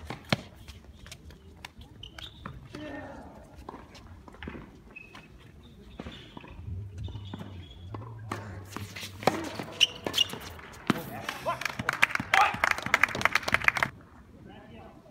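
Tennis ball struck by rackets and bouncing on a hard court during a doubles rally, sharp pops a second or more apart. Near the end the point is won, and a loud burst of shouting and clapping follows.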